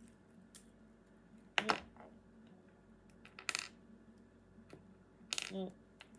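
Small metal clinks from a metal pin being handled and tested: a sharp click about a second and a half in and a brighter clink about three and a half seconds in.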